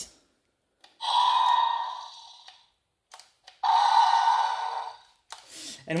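The Scorpios rex action figure's electronic roar, a hissy sound through a small toy speaker, played twice. Each roar lasts about a second and a half and fades out. It is set off by working the figure's mouth feature.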